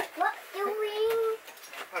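A toddler's voice: a few soft vocal sounds, then one held note lasting under a second.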